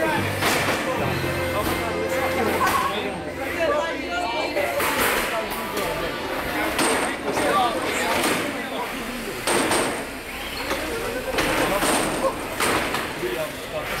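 Crowd chatter and background music filling a hall, with several sharp knocks and bangs scattered through it from the combat robots hitting each other and the arena.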